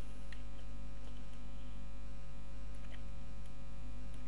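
Steady low electrical mains hum with its overtones, carried on the recording throughout, with a couple of faint clicks.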